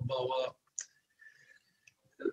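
A man's voice, heard over a video call, stops about half a second in, followed by a pause of near silence broken by a few faint clicks.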